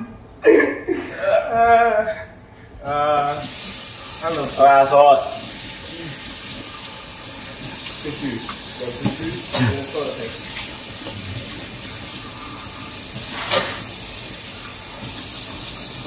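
Voices vocalising without words for the first few seconds, then a kitchen tap turned on about three seconds in and left running steadily into the sink, with a couple of brief knocks.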